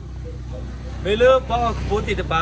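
A man's voice speaking, starting about halfway through, over a steady low rumble.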